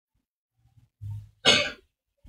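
A man clears his throat with a short low hum and then coughs once, sharply and loudly, into a microphone about a second and a half in.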